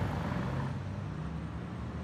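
A steady low engine hum with outdoor background noise.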